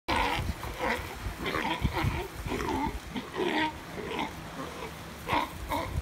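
Galapagos sea lion calling in a run of short, repeated calls, about two a second, as it gets territorial.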